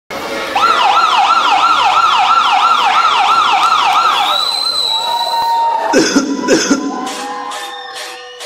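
A siren sound effect in a music track, its pitch sweeping up and down about three times a second for about four seconds, then a held high tone, two heavy hits, and a pulsing beat starting near the end as a hip-hop track begins.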